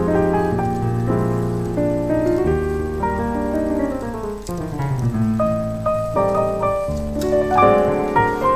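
Yamaha digital piano playing jazz chords with both hands: held chords, a run of notes stepping downward through the middle, then new chords struck near the end.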